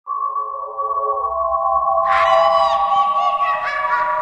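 TV station logo jingle: music of sustained held tones, joined about two seconds in by brighter, higher sounds that bend in pitch.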